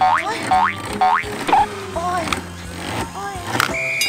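Edited-in cartoon sound effects: a series of quick rising boing-like glides over background music, with a short steady beep near the end.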